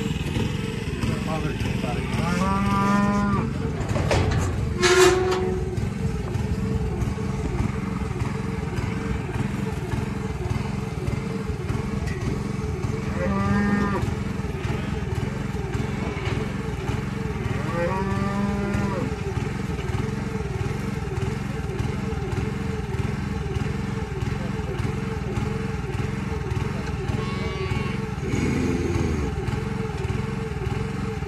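Cattle mooing three times in long calls, about two, thirteen and eighteen seconds in, over a small gas engine running steadily. A short, sharp sound about five seconds in is the loudest moment.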